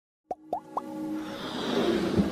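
Electronic logo-intro sound effects: three quick plops, each rising in pitch, within the first second over a held tone, then a swell that builds steadily louder.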